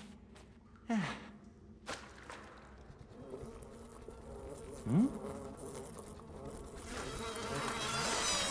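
Flies buzzing: a faint, wavering drone that grows louder toward the end. Two short gliding plinks cut through it, one falling in pitch about a second in and a louder one rising about five seconds in.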